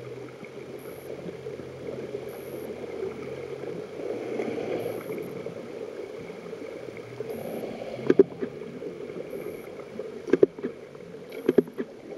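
Underwater ambience picked up by a camera in the water: a steady muffled rushing wash, with a faint low hum in the first few seconds and a few sharp knocks in the second half.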